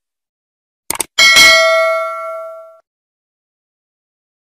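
Subscribe-button sound effect: a quick double click about a second in, then a bell ding that rings out and fades away over about a second and a half.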